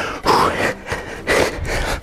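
A man breathing hard during a set of tuck jumps: two heavy breaths, one just after the start and one past the middle.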